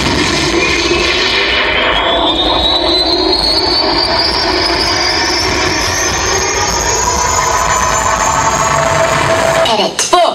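Recorded jet-plane sound effect played through loudspeakers: a steady engine roar with a high whine that climbs slowly in pitch, cut off suddenly near the end.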